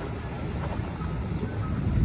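Wind buffeting the microphone outdoors: an uneven low rumble, with faint distant background sounds under it.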